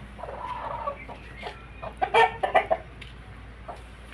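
Aseel chickens clucking, with a cluster of short, sharp, louder calls about two seconds in.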